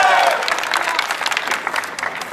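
Crowd applause that thins out and quietens to a scattering of separate claps.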